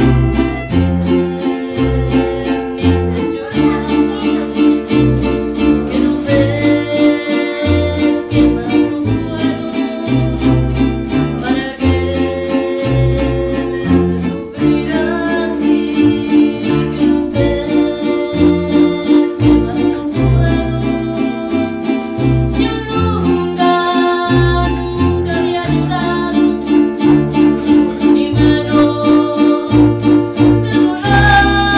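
Live mariachi-style music: a guitarrón plucking deep bass notes under strummed guitars, with a violin and a woman singing.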